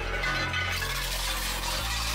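Twin-shaft shredder's cutter blades grinding into a plastic game controller and cracking its shell, a steady dense crunching noise.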